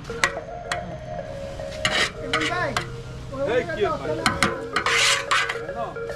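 A hand stirring and swishing through the wet contents of a large aluminium cooking pot, with scrapes and a few sharp clinks of metal on metal, and two louder bursts of stirring about two and five seconds in.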